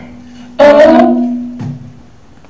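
The closing chord of a live solo song, on guitar with voice, struck loudly about half a second in and fading away over the next second, over a low held note.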